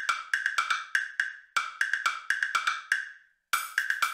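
Countdown timer sound effect: rapid wood-block-like ticking, about five or six clicks a second, in runs broken by short pauses.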